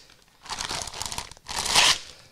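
Clear plastic bag crinkling and tearing as a moulded plastic part is pulled out of it, in two stretches, the second one louder near the end.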